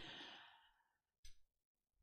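Near silence in a pause of speech, opening with a soft breath out that fades away within about half a second, and a faint short sound a little over a second in.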